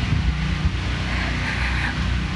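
Portable generators running in the background, a steady low hum, powering household appliances during a power outage.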